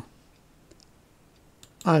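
Two faint, short computer mouse clicks against quiet room tone: one about two-thirds of a second in and one just before the voice returns. They are the button presses that place the endpoints of a line being drawn.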